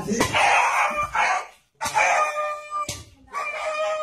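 An animal's loud cries: a rough, noisy cry, then two drawn-out calls each held at one steady pitch.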